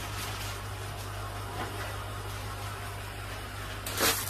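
Aquarium water pump running: a steady low hum under a faint even hiss.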